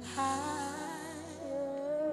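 A woman singing a soft, drawn-out worship line into a microphone, her voice sliding slowly between held notes over quiet sustained backing chords.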